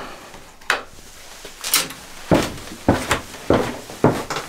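Footsteps going down a stairway: a couple of scattered knocks, then steady steps a little over half a second apart from about halfway through.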